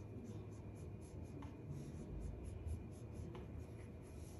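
ADST flat iron and a twin brush being drawn down a section of bleached hair, giving a run of short, faint rubbing strokes, several a second, as the hair is ironed straight during a straightening treatment.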